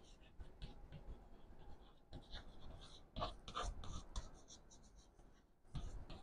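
Chalk writing on a blackboard: faint scratching strokes of the chalk across the board, busiest about three to four seconds in.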